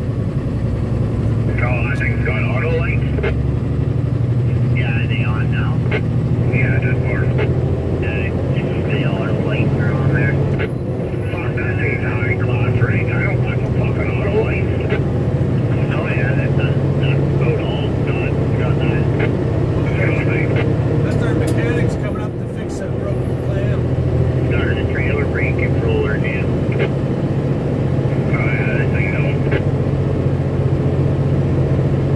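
Steady drone of a pickup truck's engine and tyres inside the cab while climbing a long hill, with bursts of indistinct, thin-sounding talk like two-way radio chatter coming and going throughout.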